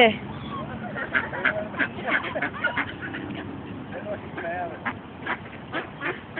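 Ducks quacking over and over, many short calls in quick succession.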